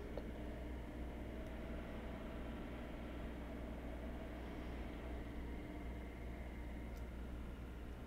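Quiet room tone: a steady low hum with a faint even hiss and no distinct sound events.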